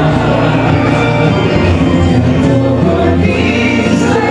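A male and a female singer singing a duet into microphones, over steady musical accompaniment.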